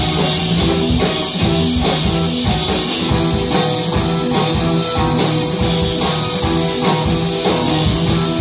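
A live rock band playing: electric guitar, bass guitar, keyboard and drum kit, loud and steady, with a regular drum beat.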